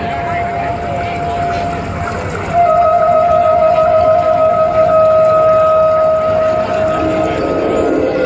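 A single long, steady electronic keyboard note held over the murmur of a large outdoor crowd. About two and a half seconds in, the note gets louder and a higher overtone joins it, and it fades near the end.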